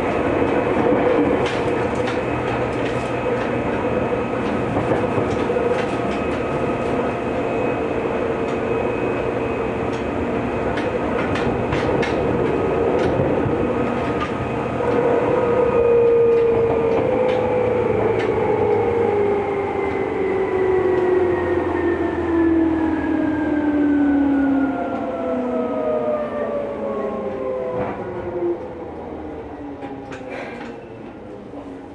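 Seibu 2000 series electric train heard from inside the carriage, running steadily with clicks from the rail joints. From about halfway through it brakes: its motor whine slides steadily down in pitch and the running noise fades as the train slows into a station.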